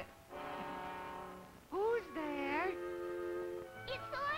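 Orchestral cartoon score playing held chords, broken about two seconds in by a short, loud sliding phrase.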